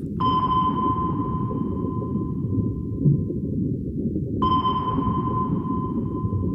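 Two active sonar pings about four seconds apart, each a clear tone that starts suddenly and rings on, fading slowly, over a low steady underwater rumble.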